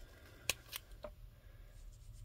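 A few small plastic clicks as dual tip pens are handled and swapped in their plastic case: one sharp click about half a second in, then two fainter ones.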